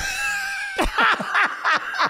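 Two men laughing hard: a high-pitched laugh held for most of a second, then rapid bursts of laughter, about five a second.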